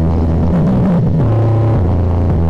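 Bass-heavy electronic dance track played loud through a stacked mini sound system of speaker and subwoofer cabinets. A held deep bass note breaks into a wobbling, sliding bass line about half a second in and returns a little after a second.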